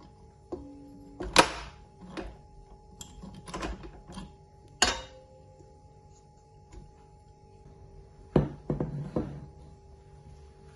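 Several sharp knocks and clatters as the stainless-steel bowl of a stand mixer, its dough hook and plastic cover are handled and scraped with a silicone spatula. The loudest knocks come about one and a half seconds in and near five seconds, with a cluster of knocks near the end, over soft background music.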